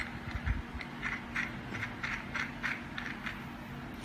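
Small plastic and metal clicks and scrapes as a tilt adapter is fitted and screwed onto a tripod head by hand, with a few low knocks near the start.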